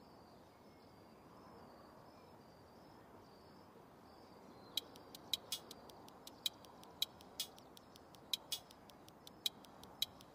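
Faint outdoor background with soft, repeated high chirps. About halfway through, a run of sharp, unevenly spaced clicks begins, a few each second.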